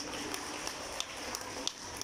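Church room tone just after a hymn ends: a steady soft hiss with light, sharp ticks about three times a second.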